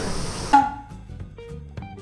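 Background music begins about half a second in: a light jingle of short, stepping notes over soft percussion. It replaces a steady outdoor hiss that cuts off abruptly at the edit.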